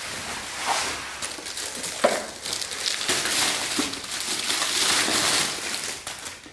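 Bubble wrap and plastic packaging crinkling and rustling as a parcel is unwrapped by hand, with a sharp click about two seconds in.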